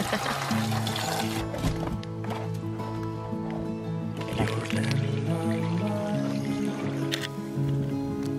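Background music with held notes that change every second or so.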